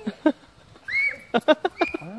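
Girls squealing and laughing: a short high squeal about a second in, then a quick run of short laughs.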